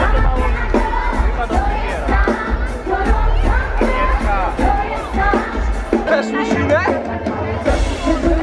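Live pop concert music over an outdoor PA, heard from within the crowd: a heavy bass beat with a woman singing, and crowd noise underneath. The bass drops out for about a second and a half near the end, then comes back in.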